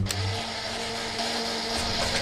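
A small electric motor whirring steadily, with a constant hum under it.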